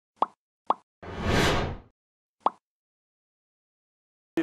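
Logo intro sound effects: two quick pops, then a whoosh that swells and fades over about a second, then a third pop, followed by silence.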